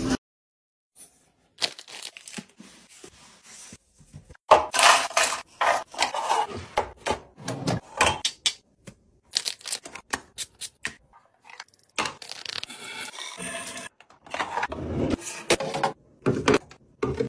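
Clear plastic organizer bins clacking, knocking and scraping on a marble countertop as they are set down and pushed into place, followed by small items being set into the bins. The taps and clacks come irregularly and are busiest from about four seconds in.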